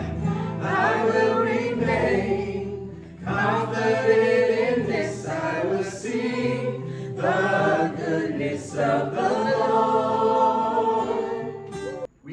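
A group of voices singing a worship song together, in long held phrases with brief breaks between them, breaking off suddenly at the very end.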